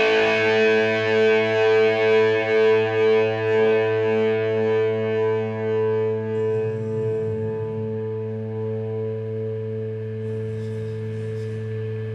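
Electric guitar through distortion and effects, holding a sustained chord that swells and wavers at first. Its upper ring slowly fades, leaving one steady held note over a low amplifier hum.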